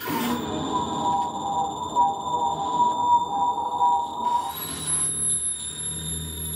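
A television playing distorted horror-tape footage: a steady eerie electronic drone with a hiss of static. The main tone cuts out about four seconds in, and a thin high whine and a low hum carry on.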